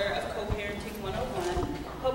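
Indistinct voices of people talking among a seated audience, with a few low thumps.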